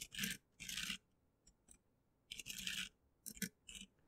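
Faint computer keyboard typing in several short bursts with silent gaps between them.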